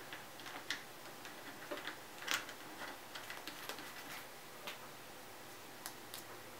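Faint, scattered small clicks and taps from hands handling the plastic faceplate and buttons of a portable thermometer.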